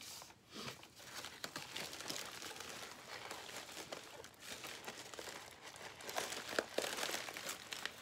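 Paper and plastic packaging crinkling and rustling as it is handled, with many small crackles throughout.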